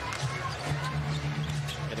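Basketball dribbled on a hardwood court, over arena crowd murmur and a steady low hum.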